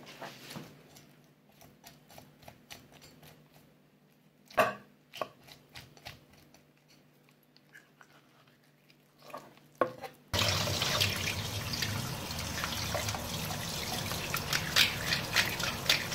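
Kitchen knife scraping out the blood line inside a gutted sea bream on a cutting board, faint, with a couple of sharp knocks. About ten seconds in, a tap suddenly runs into a stainless steel bowl in the sink as the fish is rinsed under it.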